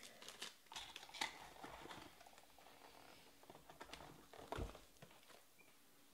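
Faint handling of foil trading-card pack wrappers: scattered light crinkles and clicks, with a soft thump a little over four and a half seconds in.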